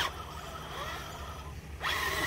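Electric motor and gear whine of an RC4WD TF2 K5 Blazer scale truck, straining against a stuck truck in thick mud, cuts off at the start, leaving a low quiet stretch with a faint brief whine about a second in. Near the end the whine starts up again, rising in pitch.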